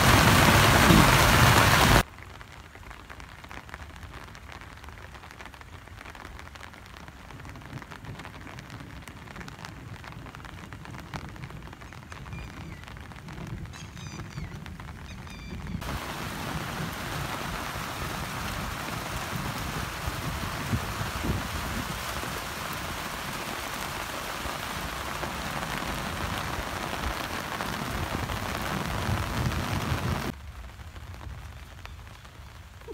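Heavy rain falling on corrugated metal roof sheets, loud and dense for the first two seconds. It then gives way to softer, steady rainfall that grows heavier again about halfway through.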